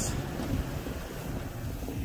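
Wind buffeting the microphone in a steady, uneven rush, heaviest in the low end.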